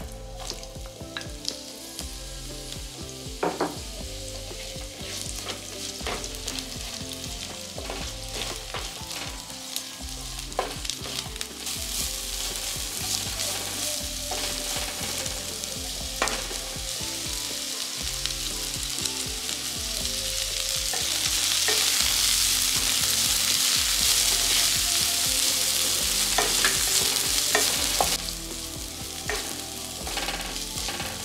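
Sliced onions sizzling as they fry in hot olive oil in a nonstick pan, with the scrape and tap of a slotted wooden spatula stirring them. The sizzle builds, loudest for several seconds about two-thirds of the way through, then eases near the end.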